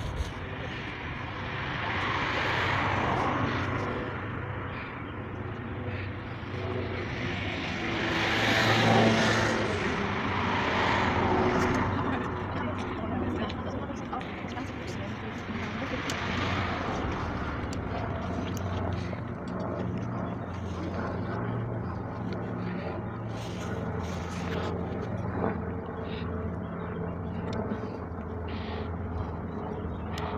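Steady low engine drone from construction machinery at a concrete pour, with passing vehicles swelling up and fading away several times, the loudest about nine seconds in.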